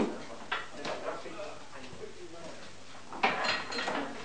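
Indistinct chatter of several people working at tables, with knocks and clatter of junk being handled. There is a sharp knock at the start and another about half a second in, and a louder run of clatter about three seconds in.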